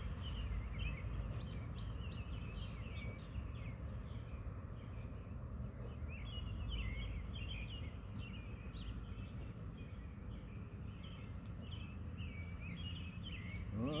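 Birds chirping in short repeated phrases, over a steady low background rumble of outdoor noise.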